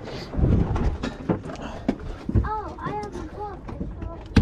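Thumps and knocks of someone moving about on a small boat's deck, heaviest about half a second in. From about two and a half seconds in there is a quick run of five or six short cries, each rising and falling in pitch.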